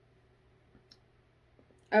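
Near silence in a small room, broken by one faint, short click about a second in, before a woman's voice starts at the very end.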